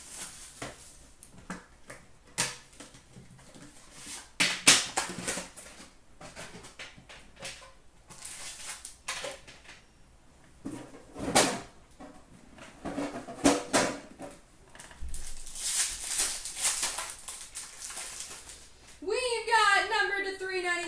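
Hockey card packs being torn open and their wrappers crinkled, in several short bursts, with clicks and taps of cards being handled. A voice starts near the end.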